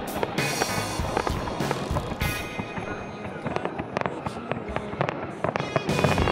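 Fireworks bursting and crackling in a rapid string of sharp bangs, over music and crowd voices.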